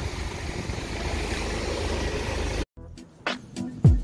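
Steady outdoor street and traffic noise for about two and a half seconds, which cuts off suddenly. Intro music follows, with sharp beats and a deep falling bass hit near the end.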